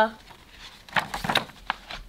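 Paper rustling as a picture-book page is turned: a few short crinkling sounds about a second in.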